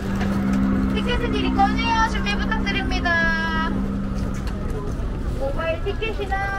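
People talking close by on a busy city sidewalk, over steady street noise. Underneath, a vehicle engine in the road gives a steady low hum that stops about three-quarters of the way through.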